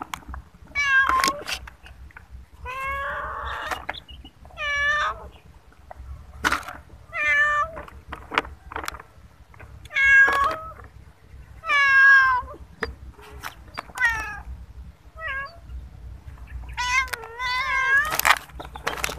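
A long-haired calico cat meowing over and over, about nine separate calls, each bending up and then down in pitch, with a few short clicks or rustles between them.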